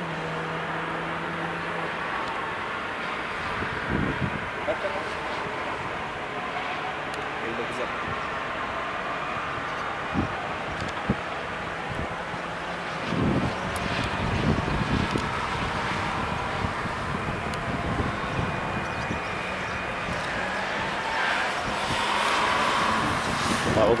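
Race cars lapping a circuit, heard at a distance as a steady engine drone. One car grows louder with rising revs near the end. A few low thumps sound now and then.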